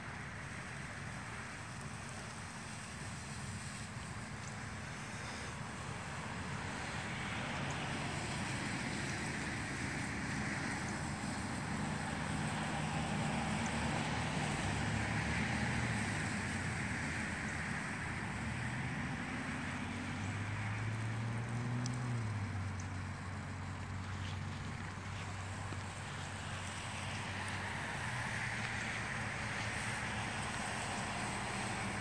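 Lawn sprinkler spraying with a steady hiss of water that swells and fades every few seconds as an English Mastiff pushes his muzzle into the spray. A low hum rises and falls through the middle stretch.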